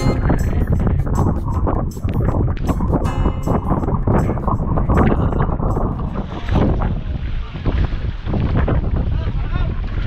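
Heavy wind rumble on the microphone aboard an outrigger boat on choppy sea, with background music over it.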